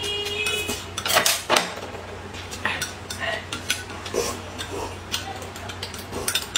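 Metal spoons and chopsticks clinking against glass cups and ceramic bowls during a meal: a run of sharp, uneven taps, the loudest about a second and a half in.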